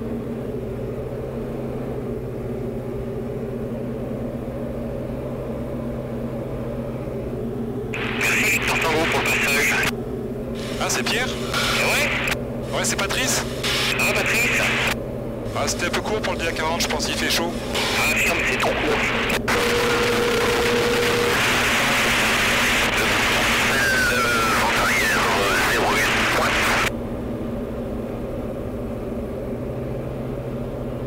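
Diamond DA40 light aircraft's piston engine droning steadily in cruise, heard from inside the cockpit. From about eight seconds in until a few seconds before the end, a loud, hissy, broken sound with short gaps sits over the engine.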